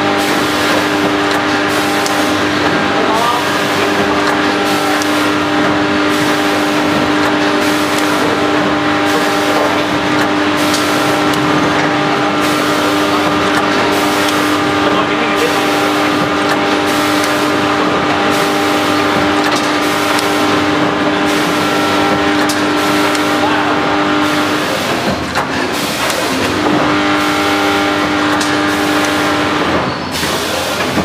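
Multihead weigher packing machine running: a steady mechanical hum with a regular stroke about once a second as it cycles through bags. The hum drops out for a couple of seconds about 25 seconds in.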